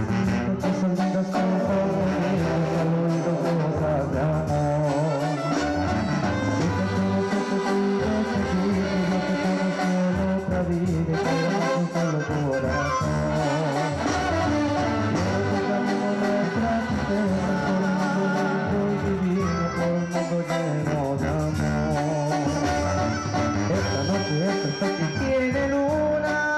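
A live Mexican brass banda playing: sousaphone bass under trumpets, trombones and drums, steady and loud.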